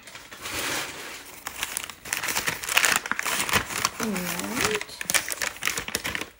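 Brown packing paper crumpling and crinkling as polish boxes are unwrapped, with a short wordless vocal sound, like a hum or 'ooh', about four seconds in.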